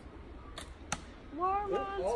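A single sharp snap of a slingshot being shot about a second in, with a fainter click just before it.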